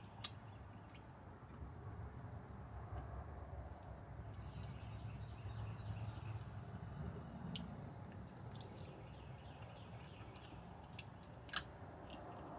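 Quiet outdoor background: a low, steady rumble with a few brief faint clicks.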